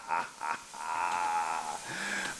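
A man laughing hard: a few short bursts of laughter, then one long high-pitched held note of laughter.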